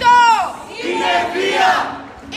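A group of protesters shouting a slogan together: one loud shout falling in pitch right at the start, then several voices at once.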